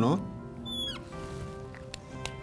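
A marker squeaking briefly on a glass writing board, a short high falling squeak about half a second in, over a soft sustained music bed.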